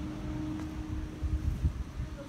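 Wind rumbling on a handheld phone's microphone, with irregular low bumps from the phone being handled and swung while its holder walks. A faint steady hum sits underneath and drops out about two-thirds of the way through.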